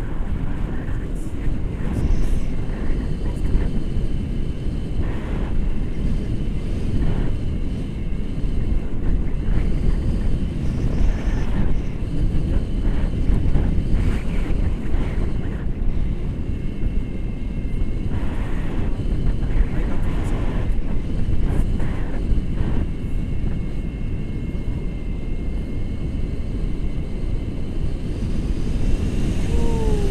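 Wind rushing over an action camera's microphone in tandem paraglider flight, a steady low rumble with no break.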